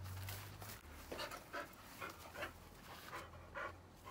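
A spaniel panting, a run of short quick breaths about two a second.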